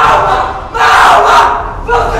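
A group of football players shouting a team war cry together in unison: two loud shouts, the second lasting about a second.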